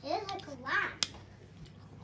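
A young child's high voice speaks briefly, then a single sharp click about a second in as a small plastic LEGO piece is snapped onto the stand's frame.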